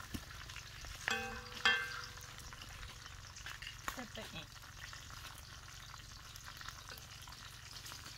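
Chicken pieces frying in oil in a metal wok over a wood fire, a steady sizzle, with a spatula scraping and turning the pieces where they are sticking to the pan.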